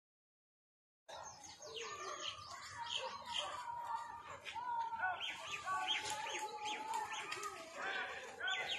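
Faint outdoor birdsong: many birds chirping in quick, repeated short calls, starting about a second in after a moment of dead silence.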